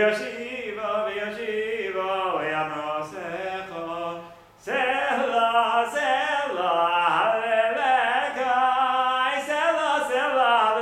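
A man singing a contemporary Jewish prayer tune solo and unaccompanied, pausing briefly for breath about halfway through and then carrying on louder.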